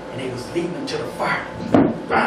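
A man's voice speaking in short, unclear bursts through a microphone in a small room, with a sharp thump near the end.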